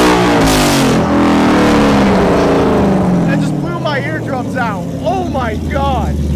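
Whipple-supercharged Ford Mustang GT V8 running through open header dumps with no exhaust fitted. It falls from a high rev back down to idle over about three seconds, then idles, so loud that it hurt the listener's ears.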